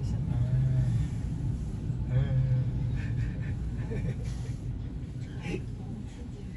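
High-speed passenger elevator car descending, giving a steady low rumble that eases and grows quieter near the end.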